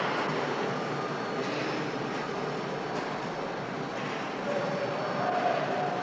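Steady machinery noise of a glass-cutting shop floor, with a few faint clicks and knocks.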